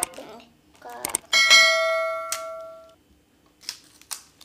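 A bell-like chime sound effect about a second in, one struck ring of several tones fading away over about a second and a half, laid over an on-screen subscribe-button and notification-bell animation.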